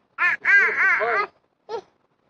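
A person's voice imitating bird calls: a quick run of about half a dozen high-pitched, rising-and-falling squawking notes lasting about a second.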